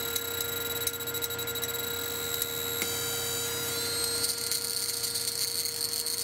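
Flyback transformer high-voltage supply running with a faint corona discharge at its output lead: a steady high-pitched whine over a low hum. About three seconds in there is a click, and the whine slides up in pitch and becomes a denser, higher whine.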